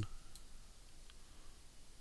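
A faint computer mouse click about a third of a second in, with a fainter tick about a second in, over quiet room hiss.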